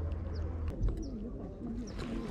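A few short, high bird chirps with faint clicks between them. A low steady hum stops about a third of the way in, followed by a soft thump.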